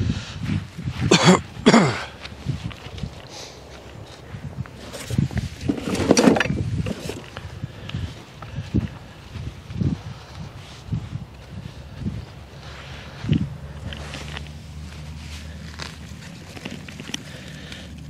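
Footsteps and rustling on a straw-mulched earth path, going away and coming back, with scattered knocks. A steady low hum sets in near the end.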